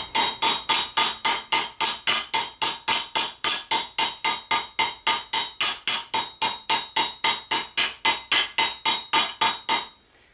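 Planishing hammer tapping a steel vambrace plate over an anvil stake: a rapid, even run of light blows, about four to five a second, each with a metallic ring, stopping just before the end. The blows are working a slight raised spot back down to smooth the surface.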